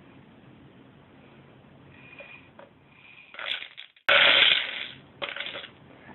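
Dry popcorn kernels poured through an upturned plastic bottle used as a funnel into a tube sock. The kernels rattle in a dense rush that starts suddenly about four seconds in and lasts about a second, with a short rattle just before it and a few smaller ones after.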